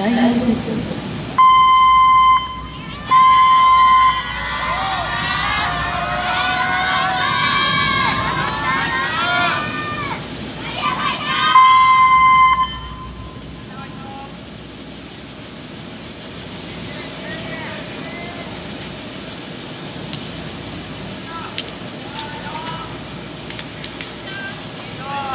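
Archery range signal horn sounding two one-second blasts about a second and a half apart, which call the archers to the shooting line. About 12 seconds in a single blast follows, the signal to start shooting. Between the blasts many voices call out, and quieter voices carry on afterwards.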